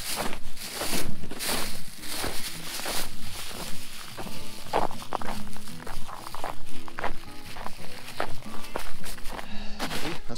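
Background music over irregular crunching and crinkling: footsteps in packed snow and a thin plastic dog-waste bag being handled and tied off.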